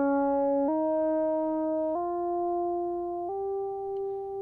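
Synthesizer tone sweeping up a fifth, pitch-corrected by Antares Auto-Tune 5 set to the Greek diatonic scale, so instead of gliding it climbs in distinct steps. Three jumps up in pitch, a second or more apart, each note held steady in between.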